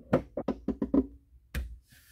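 Hands handling the plastic enclosure of a JBL BassPro Hub spare-tire subwoofer, giving a quick run of short knocks and clicks, then one louder knock about a second and a half in.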